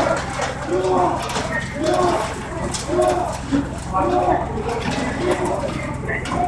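Voices chanting one short word over and over in a steady rhythm, about once a second.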